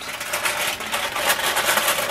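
Aluminium foil crinkling and crackling in hands as it is crimped tightly over a round baking dish, a dense run of small crackles throughout.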